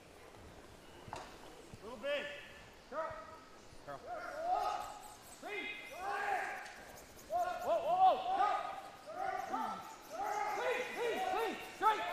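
Curlers shouting short sweeping calls down the ice, a few at first and then many in quick succession in the second half, over the scrubbing of brooms sweeping a travelling curling stone.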